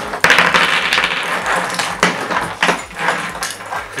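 Clinking and rattling as a strand of thin wire fairy lights and its small battery box are handled, with a rustle at the start and several short sharp clicks in the second half.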